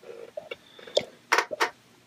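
A few short, quiet clicks and rustles, three sharp ones in the second half, with quiet after.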